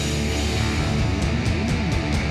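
Live rock band playing at full volume: distorted electric guitars over bass and drums.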